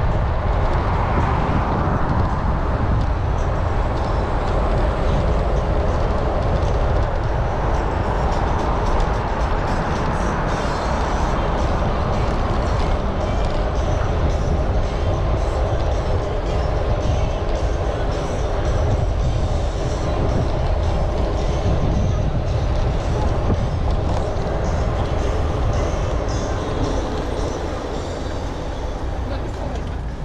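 Wind rushing over a GoPro HERO9's microphone, with road rumble, while riding a bicycle along a paved path. It eases off a little near the end as the pace slows.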